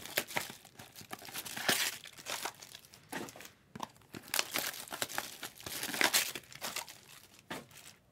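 Plastic trading-card packaging crinkling and tearing as it is opened by hand, in a run of irregular rustles that stops near the end.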